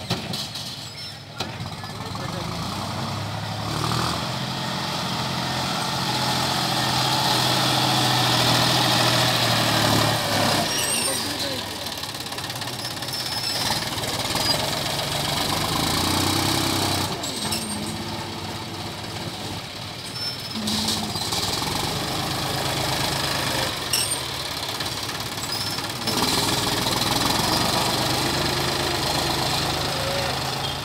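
Farm tractor's diesel engine running under load as its front loader digs and lifts soil, the engine revving up a few seconds in and holding higher revs, then easing and picking up again near the end.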